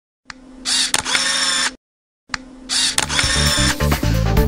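Logo intro sound effect: a short mechanical whirring effect, each opening with a click, played twice with a brief gap between. About three seconds in, electronic music with a steady low beat comes in.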